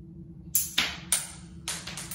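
Spring-loaded wrist cannon firing a pellet, then four sharp knocks within about a second and a quarter as the shot goes off and the pellet lands and bounces.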